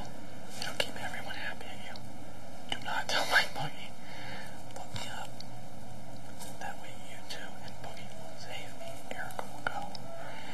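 Whispered talk from a man, too low for the words to come through, over a steady hiss. A few small clicks; the loudest is a little past three seconds in.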